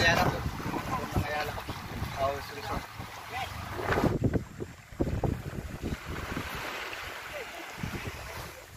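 Motorboat running, with wind rushing over the microphone and a few brief voices. About halfway through it cuts to quieter gusts of wind buffeting the microphone.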